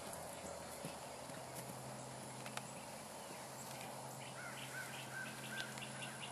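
Faint, muffled hoofbeats of a pony cantering on grass in open-air ambience, with a steady low hum. Near the end a bird calls four short notes.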